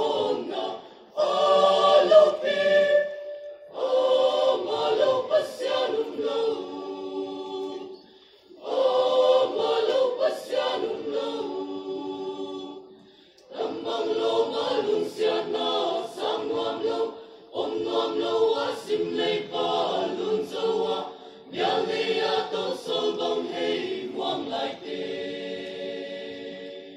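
Mixed choir of female and male voices singing unaccompanied in phrases of a few seconds each, with brief breaks for breath between them.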